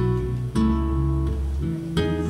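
Live band music: an acoustic guitar strumming chords over an electric bass guitar, with no vocals. The chords change about half a second in and again near the end.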